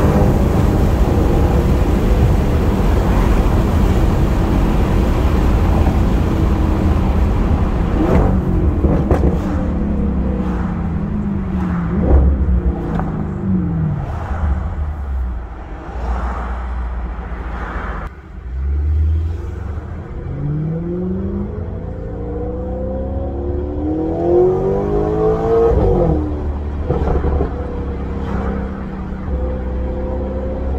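Stage 3-tuned Audi S6 heard from inside the cabin: steady engine and road noise while cruising, then the revs falling away as the car slows in traffic. Just past halfway the engine pulls away again, revs rising through a couple of gear changes before settling.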